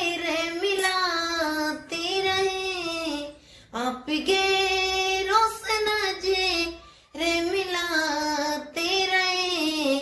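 A woman singing a sad Hindi song without accompaniment, drawing out long high notes that waver, with two short breaths, one about three and a half seconds in and one about seven seconds in.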